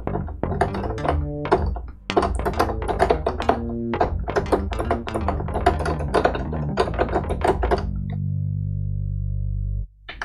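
Korg opsix FM synthesizer playing its "FM Slap" slap-bass preset: a quick run of short, percussive plucked bass notes. Near the end a low note is held for about two seconds and then cuts off suddenly.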